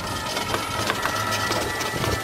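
Passenger rickshaw rolling along a road, its metal frame and seat rattling and clicking, over a low rumble and a few steady high tones.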